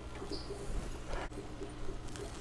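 Quiet background: a low steady hum with a couple of faint clicks about a second in.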